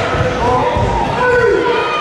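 Voices calling out in an echoing sports hall over repeated thuds of bare feet on the floor during a karate sparring bout.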